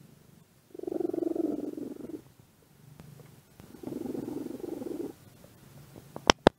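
Tabby cat purring, in two louder spells with a quieter stretch between.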